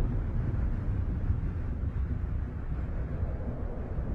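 A low, steady rumbling noise with no clear pitch or rhythm.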